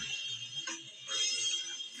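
A hip-hop backing beat playing in a short gap between rapped lines.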